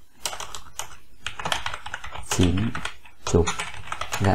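Typing on a computer keyboard: a quick, irregular run of key clicks as a line of text is entered.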